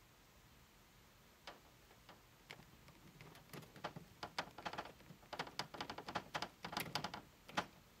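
A screw being driven by hand with a screwdriver into a microwave's sheet-metal vent grille: faint, irregular clicks and ticks of the tip and screw turning, growing denser from about three seconds in.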